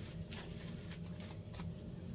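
Faint, scattered light clicks and rustles of small objects being handled, over a low steady hum.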